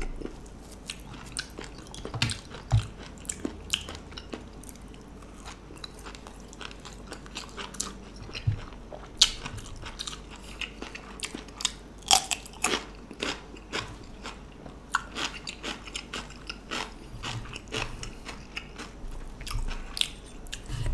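A person chewing and biting food close to the microphone, with many short crisp crunches and wet mouth clicks scattered irregularly.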